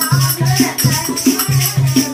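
Dholak barrel drum played in a quick, steady folk rhythm of low, booming strokes, with a rattling, jingling percussion keeping time over it.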